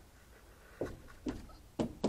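Three soft knocks about half a second apart, the last the loudest, from a hand tapping and handling the plastic interior trim around a van's rear side window.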